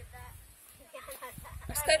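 Chickens clucking in short, curved calls, louder near the end.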